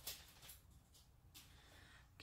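Near silence: room tone with a few faint, brief rustles.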